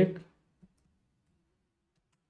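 A single faint computer-keyboard keystroke just after a spoken word ends, then near silence.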